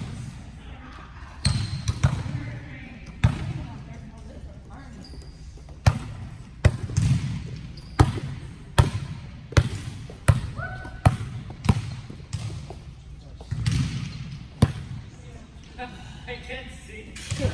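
A volleyball being struck and bouncing on the court: a run of sharp smacks, a few at first and then about one a second from about six seconds in, echoing in a large gym.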